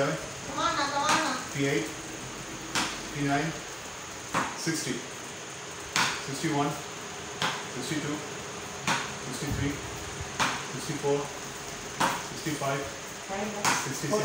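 Wooden cricket bat repeatedly striking a ball hung on a rope, a sharp knock about every second in a continuous hitting drill.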